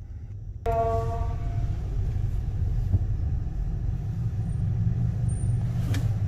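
Taxi running, its low rumble heard inside the cabin. A little under a second in, a louder hiss comes on suddenly, opening with a short tone that fades away.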